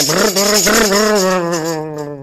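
A man's voice imitating a car engine with a long buzzing "brrr", its pitch wavering and sinking slightly as it fades. A rattling, shaker-like sound runs under it and stops near the end.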